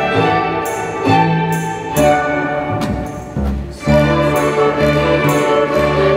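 A small orchestra of violins, cellos, double bass, flute and clarinet plays a Christmas tune with evenly paced sustained notes. About three seconds in it thins out and quietens briefly, then the full ensemble comes back in.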